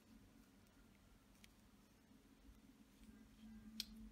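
Near silence: room tone with a faint steady low hum and a faint click or two, the clearest near the end.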